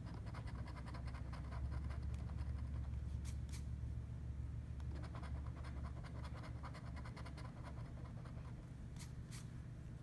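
Coin scratching the coating off a paper scratch-off lottery ticket in quick, repeated strokes, busiest in the first half.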